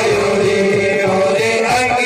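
A group of men singing a devotional chant in long held notes, accompanied by a harmonium and hand drums beating a steady rhythm.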